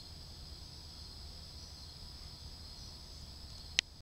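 Crickets chirring in a steady night chorus over a low background rumble, with a single sharp click near the end.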